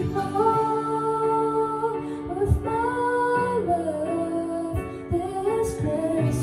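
A woman singing into a handheld microphone, holding long notes with slow slides in pitch.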